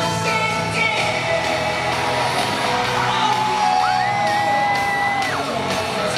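Live K-pop concert music with singing, heard from the audience in a large arena. About four seconds in, a high note glides up and is held for about a second and a half.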